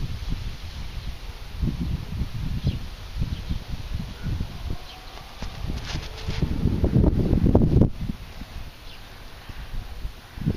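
Wind buffeting the microphone outdoors: an uneven low rumble that comes and goes in gusts, strongest about seven to eight seconds in, with faint rustling.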